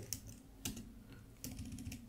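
A few faint, separate keystrokes on a computer keyboard while code is being typed.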